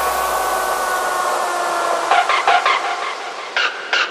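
Breakdown in a hard techno track: the kick and bass fall away, leaving a fading noise wash with a few held synth tones, then short repeated synth stabs from about two seconds in.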